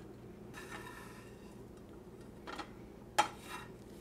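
A metal spatula knocks against a skillet twice near the end, over a faint sizzle of bread frying in melted butter.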